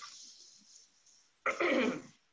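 A woman clearing her throat once: a short, loud rasp about one and a half seconds in.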